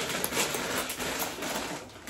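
Crunching and chewing of a corn tortilla chip close to the microphone, a dense crackle of many small cracks.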